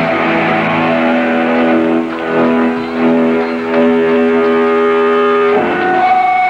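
Distorted electric guitar in a live hardcore punk band, a chord held and ringing on as a song ends. It is loud and steady, and the sound shifts to a different held tone near the end.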